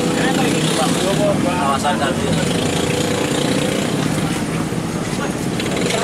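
A motor vehicle engine running steadily under continuous road traffic noise, with scattered voices of people talking in the background.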